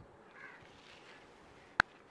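Faint, distant crow cawing, with a single sharp click near the end.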